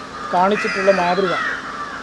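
Speech: a voice-over narrating in Malayalam, with a short pause before it begins.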